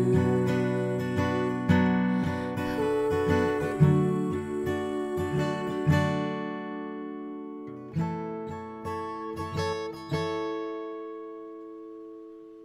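Acoustic guitar playing the last bars of a song: picked and strummed notes for about six seconds, a short pause, a few final notes, and a last chord left ringing and fading away.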